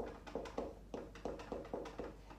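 A marker writing on a whiteboard: a quick run of short taps and strokes, several a second, as letters are written.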